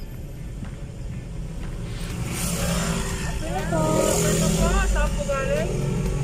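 Steady low rumble of a car's engine and tyres heard from inside the cabin while driving, growing louder with a rush of noise about two seconds in. From about halfway, a high-pitched voice rising and falling in pitch is the loudest sound.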